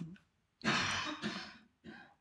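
A person clearing their throat once, a soft, raspy sound lasting about a second that starts about half a second in.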